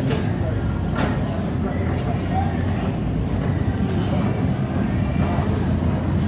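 A steady low rumble of background noise, with faint voices underneath.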